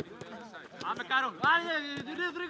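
A man shouting a long, drawn-out "come on" on an outdoor training pitch, with a football kicked once near the start.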